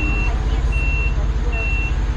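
Forklift back-up alarm beeping, a single high tone repeating about once every 0.8 seconds, over the steady low rumble of an engine running.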